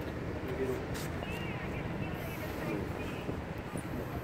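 Steady low background noise with faint voices in the background.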